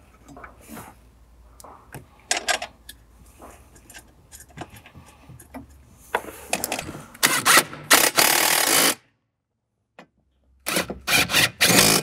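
Cordless drill/driver with a socket on an extension driving the 10 mm screws that hold a metal plate under a Jeep dash. Small handling clicks come first, then a longer run of the tool about six to nine seconds in, and short bursts near the end.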